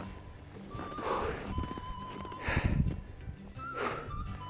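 A man's heavy, breathy exhalations, puffing "uf" three times: out of breath after a long, exhausting climb at nearly 7,000 m.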